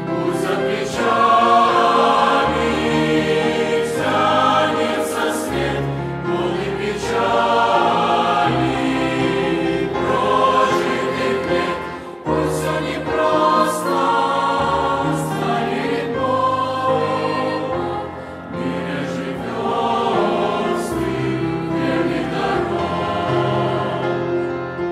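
Mixed youth choir of young men and women singing a Russian-language hymn together, with short breaks between phrases about halfway through and again later.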